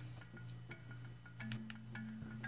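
Small plastic button clicks on a digital meat thermometer as its backlight is switched on, over a faint steady low electrical hum.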